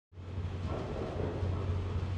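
Steady low mechanical hum over a faint hiss: the background drone of brewhouse equipment.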